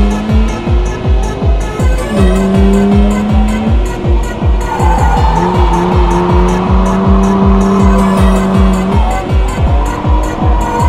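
Hard trance music with a steady kick drum, over an old BMW drift car's engine held at steady revs and its tyres squealing as it slides sideways. The engine note dips briefly about four seconds in, then holds again.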